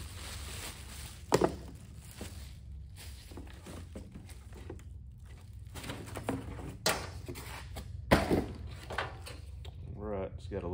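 Packaging being handled: plastic wrap rustling and cardboard box flaps, with several sharp knocks as a new orbital polisher is taken out of its box. The loudest knock comes about eight seconds in, over a low steady hum.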